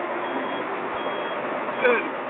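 A Hyundai 270 heavy machine running with its reversing alarm beeping faintly twice. Near the end a short, loud, falling call cuts across it.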